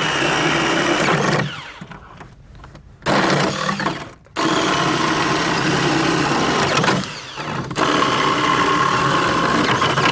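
Battery-powered Ryobi electric chainsaw sawing through wooden pallet boards in four runs of the trigger. Its steady motor-and-chain whine drops away between cuts, longest at about a second and a half in, and briefly at four and at seven seconds.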